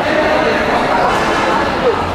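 Several people chattering at once, a mix of overlapping voices with no single clear speaker, in a large hall.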